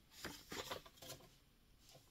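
Faint rustling of a paper sheet being handled, a few soft rustles in the first second or so and one more near the end.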